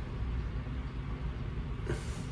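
Steady low background rumble, with no distinct events on top of it.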